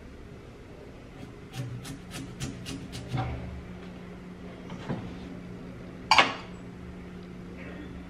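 Small kitchen knife slicing through a raw beetroot onto a hard table: a quick run of sharp clicks, about four a second, as the blade cuts through to the surface. Then a couple of knocks as the knife and slices are set down, the loudest about six seconds in.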